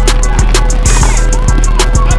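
Background music with heavy bass and a steady beat.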